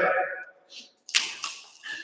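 A jump rope slapping once onto the rubber gym floor about a second in, a sharp whip-like crack with a short tail.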